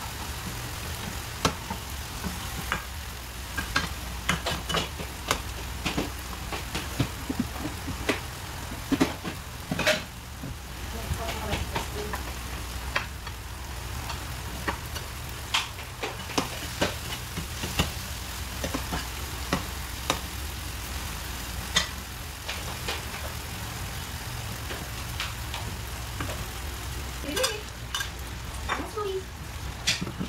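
Tomato, onion and garlic sizzling in hot oil in a nonstick frying pan. A cooking utensil stirs and scrapes against the pan in irregular clicks and taps.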